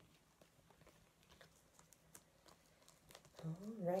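Faint, light clicks and rustles of cut-out mitten pieces being handled and fitted together, with a woman's voice saying "alright" near the end.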